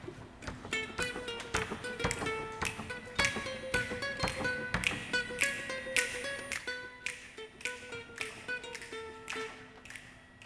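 Solo ukulele picking a quick countermelody of single plucked notes, several a second, meant to ornament the main melody.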